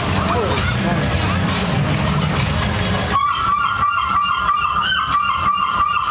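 Loud street-parade mix of music and shouting voices. About halfway through, the bass drops out suddenly and a held high tone with a pulsing beat takes over.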